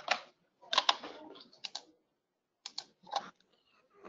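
Typing on a computer keyboard: a few short, irregular bursts of key clicks.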